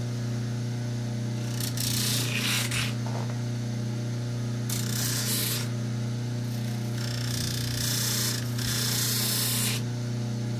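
Baldor bench grinder's motor running with a steady hum, while a rubber recoil pad is pressed lightly against its spinning wheel in three passes, about two, five and eight seconds in, each a rasping grind of a second or more, the last one the longest. The wheel is shaping the pad's edge to the contour of the shotgun stock.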